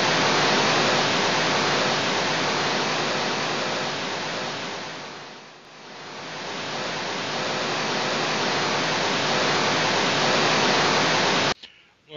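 Loud, steady hiss of static noise that starts abruptly. It dips to a low point about halfway through, swells back up, and cuts off suddenly just before the end.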